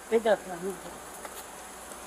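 A short spoken utterance, then steady outdoor background noise with a faint, steady high-pitched hum underneath.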